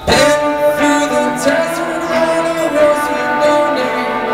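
Live rock band starting a song on electric guitars: a loud first chord comes in suddenly at the very start, and the guitars ring on with chords.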